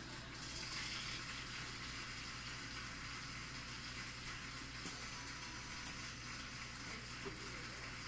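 Studio audience applauding on a television, a steady hiss-like clapping through the TV's speaker, with two short sharp clicks about five and six seconds in.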